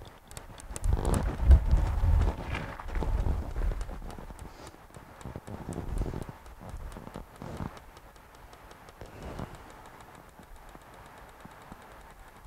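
A small metal ball bouncing again and again on a metallic glass plate inside a clear tube, its clicks coming ever faster as the bounces shrink, with a few heavier knocks in the first seconds. The long run of bounces is the sign of the metallic glass storing and returning elastic energy far better than aluminium.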